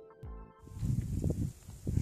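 Background music with a steady beat that cuts off about half a second in. Then comes outdoor handheld-camera sound: irregular low thumps and rustling from footsteps on dry leaf litter.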